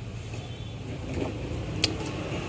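Steady low background rumble with a single sharp click near the end, from a circuit board and multimeter test probes being handled.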